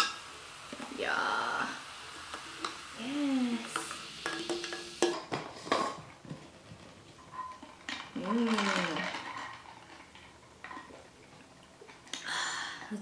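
Canada Dry ginger ale poured from a can over ice into a plastic tumbler and fizzing, then a cluster of sharp clicks and clinks about halfway through as the lid goes on and a straw stirs the ice. A short hummed "mm" is heard twice.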